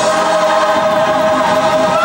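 Live gospel choir holding one long chord, with a solo voice singing wavering runs above it.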